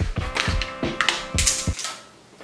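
A quick run of about eight sharp clicks and knocks of hand tools being picked up and set down on a wooden folding table, stopping near the end. Background music with a held note plays under them.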